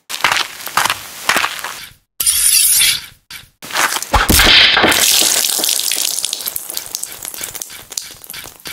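Sound effects for an animated logo: crackling and whooshing noise with brief dropouts, then a low impact about four seconds in, followed by a long crash that fades away.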